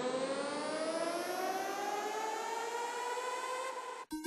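Synthesizer riser in a trap instrumental: one sustained buzzy tone over a layer of noise, gliding slowly and steadily upward in pitch as a build-up, then cutting off suddenly right at the end.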